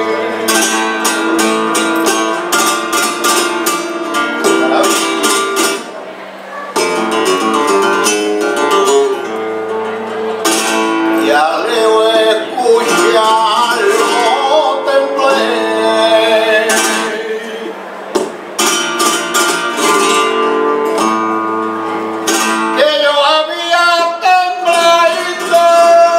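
Flamenco guitar playing tientos: strummed passages with fast, dense strokes alternating with picked melodic runs. A male flamenco singer's voice comes in near the end.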